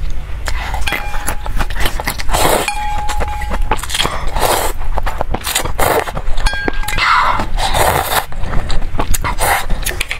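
Close-up slurping of noodles and chili broth from a metal pot, about half a dozen loud slurps. Between them, chopsticks clink lightly against the pot.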